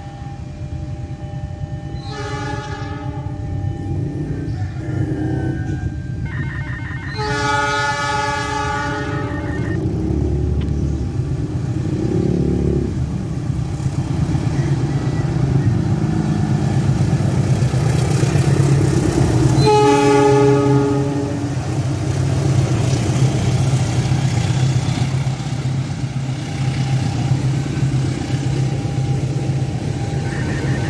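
KAI CC206 diesel-electric locomotive hauling a passenger train sounds its horn three times, a short blast, a longer one of about three seconds, then another short blast about twenty seconds in. Its engine and wheels rumble louder as it passes.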